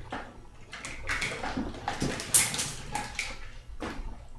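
Handling noise as combs are picked up and gathered: scattered clicks, knocks and rustles, with one sharper clack a little over halfway through.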